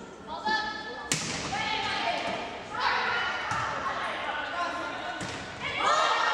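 Volleyball served with one sharp hand-on-ball smack about a second in, echoing in a gym, then a few fainter ball contacts during the rally. Players and spectators shout and call out over it, louder from about halfway through and again near the end.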